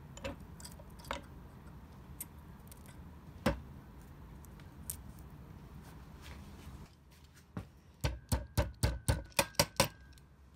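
Small metal clicks and taps as short lengths of wire are bent to right angles in a cast-iron bench vise. Near the end comes a quick run of about nine sharp metal knocks with a faint ring.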